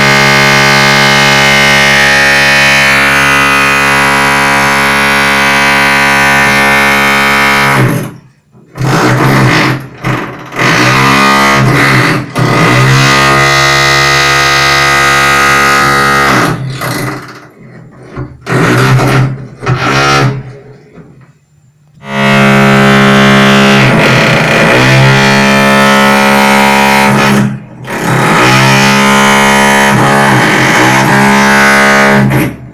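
Electric hammer drill running, with a buzzing, pitched tone. It runs steadily for about eight seconds, then comes in several short bursts, its pitch rising and falling as it starts and stops. Near the end it runs steadily again, with one brief break.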